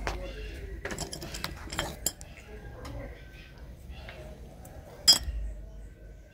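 A few light clicks and clinks of small objects being handled at a work table, the loudest about five seconds in.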